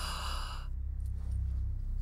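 A sigh, a breathy outward rush of air that ends about two-thirds of a second in, over a low steady hum.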